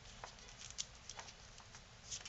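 Faint, scattered crackles of folded cardstock being pinched and pressed together as the last folds are nested into each other.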